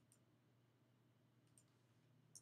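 Near silence with a faint steady hum and two faint computer clicks, one at the start and one about a second and a half in.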